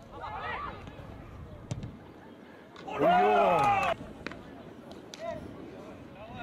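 Players' voices shouting across an open football pitch, with a sharp knock of a ball being struck about two seconds in. About three seconds in comes one loud man's yell lasting about a second, rising then falling in pitch: a goal-celebration shout.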